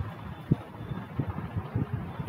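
Low, steady background rumble and hiss in a pause between spoken phrases, with one brief knock about half a second in.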